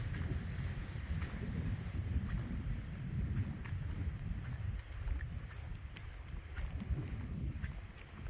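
Irregular low rumble of wind buffeting the microphone, rising and falling in gusts.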